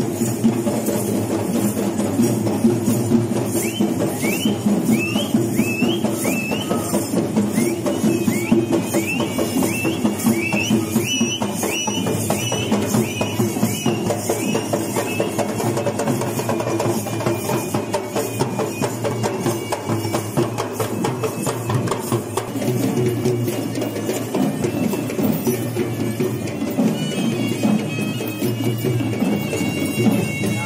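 Live procession drumming: several Sri Lankan barrel drums beaten by hand in a fast, dense, steady rhythm. A reedy pipe plays short rising phrases over the drums in the first half and holds longer notes near the end.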